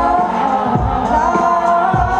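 Live concert music through a large festival PA, heard from within the crowd: held sung notes from several voices over deep bass thumps.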